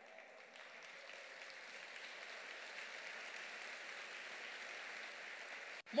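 A church congregation applauding, faint and building slightly, then cut off abruptly near the end.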